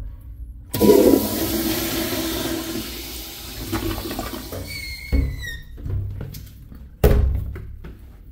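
Vintage Crane Correcto toilet with a flushometer valve flushing: a sudden loud rush of water about a second in that eases off over several seconds and ends with a short falling whistle. A sharp thump comes near the end.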